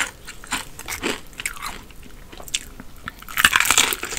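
Close-miked chewing of crispy fried chicken, with small crackly crunches. Near the end comes a loud, longer crunch as a bite is taken into a drumstick's fried crust coated in honey and hot sauce.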